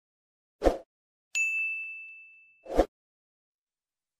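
A short thud, then a single bright bell-like ding that rings and fades over about a second, then a second thud.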